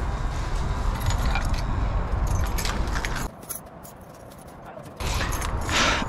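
Small metal objects jangling and clinking over rumbling handling noise while someone walks. The noise drops away for under two seconds in the middle, then returns louder.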